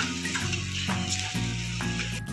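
Masala of garlic, onion and chilli paste sizzling as it fries in hot oil, stirred with a spoon in a metal pan. Background music with held notes that change every half second or so plays over it.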